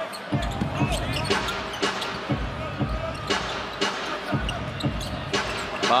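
Basketball dribbled on a hardwood court, with thumps about twice a second over the steady noise of an arena crowd.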